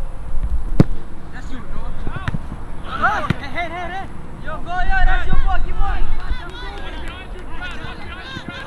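Players and coaches shouting on a soccer pitch, with a sharp thud of the ball being kicked about a second in and another near the middle. Low rumble of wind on the microphone comes and goes underneath.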